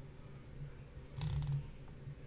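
Faint steady low hum, with a short quick cluster of soft computer-keyboard clicks a little over a second in as a word is typed, and one more faint click near the end.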